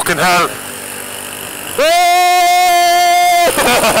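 A vehicle horn sounds one steady blast of about a second and a half, starting and cutting off sharply, over the running engine and road noise of a small motorbike.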